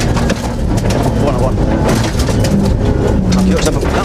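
Suzuki Grand Vitara cross-country rally car driving hard on a gravel track, heard from inside the cabin: a loud engine and tyre-and-gravel noise with repeated sharp knocks from stones and the chassis.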